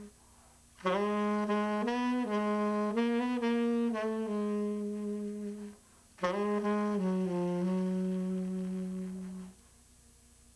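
Unaccompanied saxophone playing a slow jazz melody of held notes in two phrases, with a short break about six seconds in; the playing stops shortly before the end.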